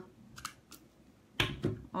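Hand-held eyelet pliers punching holes through felt: a few light clicks, then a sharp snap about one and a half seconds in and a second one just after as the punch cuts through.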